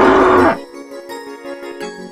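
A loud animal-call sound effect voicing the animated Isanosaurus, one hoarse, pitched call that dips and cuts off about half a second in. Light mallet-percussion background music plays under it and carries on after.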